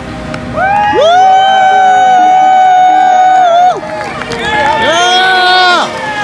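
A high voice holding two long notes, the first about three seconds long and the second about one second, each sliding up into the note and falling away at the end.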